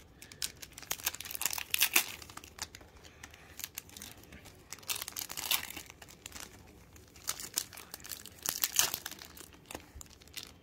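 Foil booster-pack wrappers crinkling as they are handled, in three bursts of crackling about a second in, midway and near the end.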